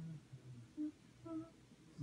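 A man humming quietly: a low, steady 'mm' that ends just after the start, then two short hums about a second in.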